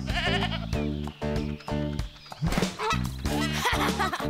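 Background music with a cartoon goat's wavering bleat at the start.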